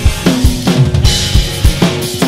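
Acoustic drum kit played hard at a fast rock tempo, with kick drum, snare and cymbals, over the song's instrumental backing track with guitar and bass. A cymbal crash rings out about halfway through.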